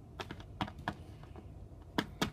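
Light clicks and taps of hard plastic as small toy figures are handled on a tabletop: a handful in the first second, then a sharper click at the very end.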